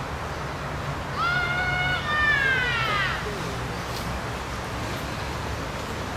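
A loud, drawn-out two-part call from a large bird about a second in: a level note, then a longer note that falls in pitch, over a steady low background rumble.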